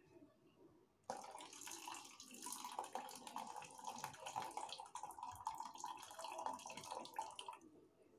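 Hot water poured from a vacuum flask into a tall drinking glass: a steady stream of splashing liquid that starts about a second in and stops shortly before the end.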